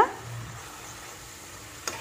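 Faint, steady sizzle of spinach leaves cooking in a non-stick pan as they are stirred with a spatula, with one light click near the end.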